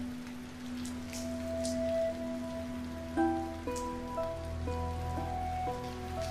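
Soft dramatic background score: one low note held for about three seconds, then a slow sequence of sustained notes that change about every half second. Under it there is a low steady hum.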